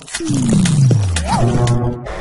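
News channel logo sting: a produced sound effect with a deep tone sliding steadily downward for about a second and a half, a short rising-and-falling tone partway through and a few sharp hits.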